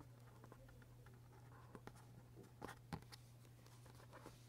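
Faint handling of paper stickers on journal pages: fingertips placing and pressing them down, giving a few soft ticks and rustles, the loudest about three seconds in, over a steady low hum.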